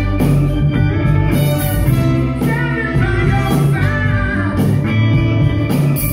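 Live soul band playing loudly, with a singer's voice over the band.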